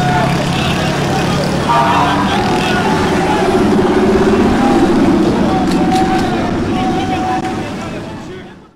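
A 4x4 SUV driving past on a street, its engine running and rising in pitch in the middle, with people's voices and street noise around it. The sound fades away near the end.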